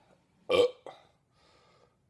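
A man's single short, loud burp about half a second in, brought up by the carbonated malt liquor he is drinking.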